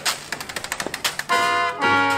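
Jazz-style transition music: a quick run of drum hits, then held brass chords from a little past halfway.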